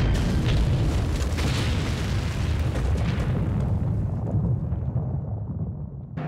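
Staged sound of a huge gunpowder mine explosion: a sudden blast that runs on into a long, deep rumble. The upper hiss dies away over the last couple of seconds while the low rumble continues.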